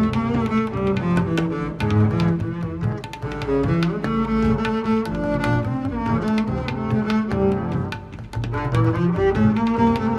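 Instrumental music featuring a double bass, a continuous run of pitched notes with no pause.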